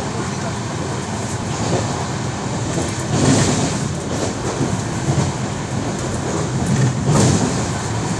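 Inside a passenger train coach running through a station without stopping: the steady noise of wheels on the rails and the coach in motion, with voices in the background.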